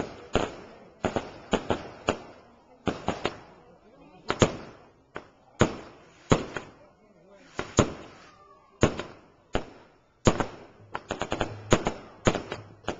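Fireworks going off: a string of sharp bangs from aerial bursts, spaced irregularly about half a second to a second apart, each with a short echoing tail. Near the end comes a quick cluster of cracks.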